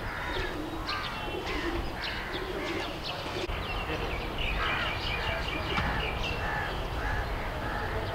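Outdoor ambience of several birds chirping and calling in quick short notes throughout, busiest in the second half, over a steady low background rumble.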